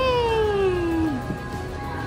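A young child's long wordless vocal cry, shooting up and then sliding slowly down in pitch for about a second, like a drawn-out meow.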